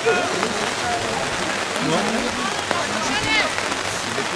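Steady rain falling, an even hiss throughout, with a few faint voices calling out briefly now and then.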